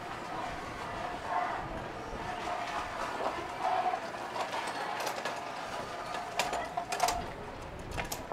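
A manual wheelchair being pushed over tiled paving, rattling as it rolls, with a few sharp clicks in the later seconds.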